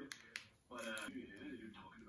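A faint voice, with two sharp clicks near the start.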